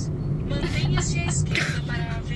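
Steady low engine and road rumble inside a moving car's cabin, with brief fragments of voice over it.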